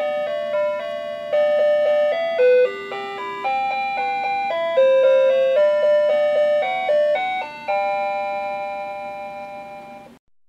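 Tinny electronic chime melody from a Gemmy animated Easter bunnies on swing decoration, played by its built-in sound chip. The simple tune steps note by note, then ends on a long held note that fades away near the end.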